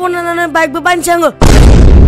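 A melody with a bending, whistle-like line over a low drone. About one and a half seconds in, a loud explosion-like blast of noise cuts it off and lasts under a second.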